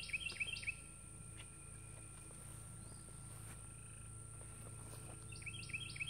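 A bird singing a short run of quick repeated chirps, about four a second, near the start and again near the end.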